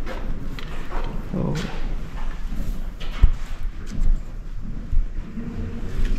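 Irregular footsteps and scattered knocks, a few sharp thumps standing out over a noisy background.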